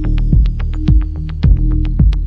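Afro-sound electronic dance music: a steady kick drum about twice a second over a held bass tone, with quick hi-hat ticks between the beats.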